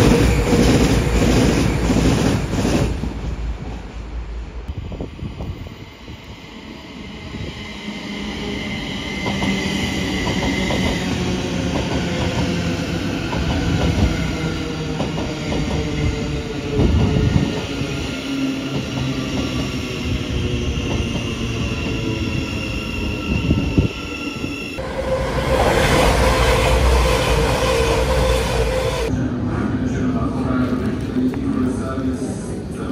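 A series of passing trains with cuts between them. An East Midlands Railway Class 222 Meridian diesel unit passes loudly at the start. About three seconds in, a Thameslink Class 700 electric unit moves through a station with a steady high whine. Near the end, another train passes loudly.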